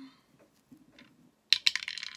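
Metal coins clinking together as they are handled and set down, a quick run of sharp clicks with a short ring about one and a half seconds in.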